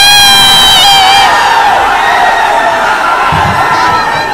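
Large dense crowd cheering and shouting loudly, with a long shrill cry held for about the first second before it fades into the general din.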